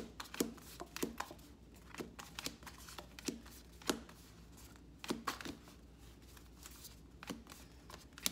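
Tarot cards being taken off a deck one at a time and dropped onto a pile on a table: a run of irregular soft card snaps and slaps.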